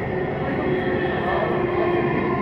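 Delhi Metro train running at speed on an elevated track, heard from inside the carriage: a steady rumble of running noise with a steady motor whine.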